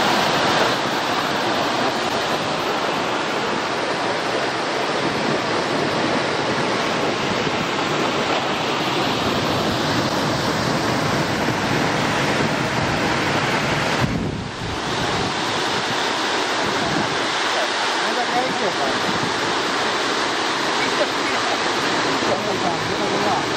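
Steady rushing of river water spilling over a low weir and shallow rapids, with a brief dip about 14 seconds in.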